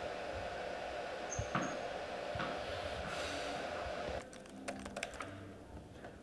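A steady hiss of room noise with a few soft taps and two short high squeaks. It then drops abruptly to a run of quick, light, scattered clicks.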